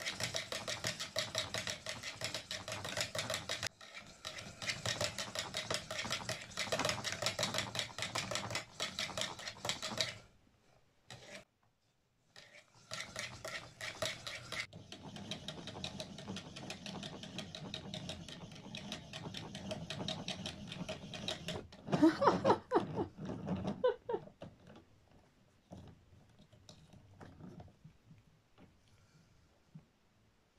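Hand-cranked plastic yarn ball winder being turned, its gears clicking rapidly; the clicking stops for a couple of seconds about ten seconds in, then starts again and softens. Near the end comes a brief, loud vocal sound whose pitch rises and falls.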